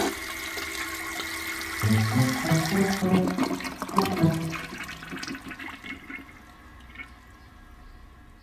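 Toilet flushing, the rush of water tapering off over the first seconds, with soft background music playing a short melody. The toilet is blocked.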